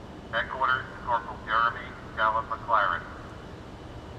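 A man's voice over a police radio, thin and narrow-band, repeating a dispatcher's 'Headquarters to' call to a fallen officer in the last-call roll, with a steady low background hiss.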